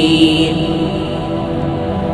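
Bengali Islamic gojol (devotional song): a held sung note fades out about half a second in, leaving a steady droning backing, before the next line begins.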